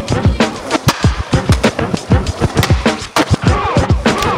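Boom-bap hip-hop beat with punchy drum hits, and turntable scratches near the end.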